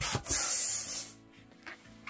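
Air hissing from a balloon pump into a red long modelling balloon for about a second as it is inflated, followed by a few short squeaks of hands rubbing on the latex.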